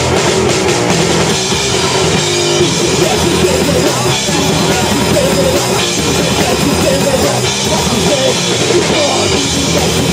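Live rock band, electric guitar and drum kit, playing a song at a steady, loud level.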